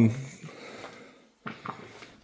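A man's drawn-out "um" trails off at the start, then a quiet pause with faint background noise and a brief soft sound near the end.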